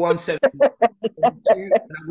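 Men laughing hard, a quick run of short 'ha' sounds at about five a second, after a single spoken word.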